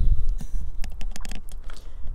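Low rumble of wind and handling on a phone's microphone, with a run of light clicks and taps, while the camera is moved back.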